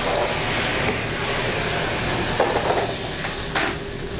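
Thick filet steak sizzling in a hot pan, a steady hiss with two brief knocks in the second half.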